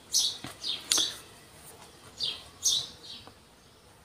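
Small birds chirping: a string of short, high, falling chirps, several in the first second and a couple more later on.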